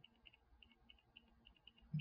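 Faint computer mouse clicks, a string of soft, irregular ticks several times a second, against near silence with a low hum.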